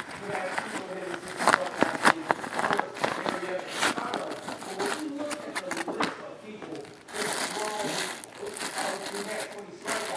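Thin clear plastic bag crinkling in irregular crackles as a baseball wrapped in it is pulled from a cloth pouch and handled.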